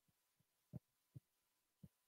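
Near silence: a pause in a talk over a microphone, with a few faint low thumps, the clearest about three quarters of a second in.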